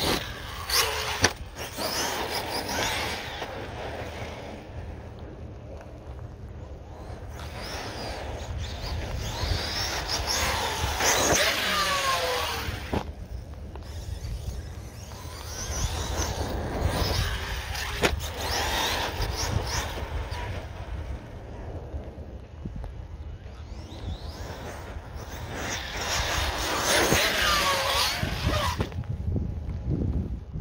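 Arrma Outcast 6S RC monster truck's brushless electric motor whining in repeated bursts as the truck accelerates and lets off, the pitch gliding up and down, under a steady low wind rumble on the microphone.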